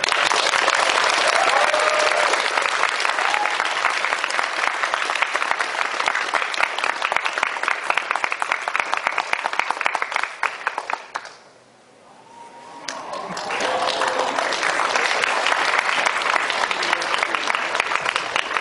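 Audience applauding, with a few voices calling out over the clapping. The applause dies down about eleven seconds in, then swells again and keeps going.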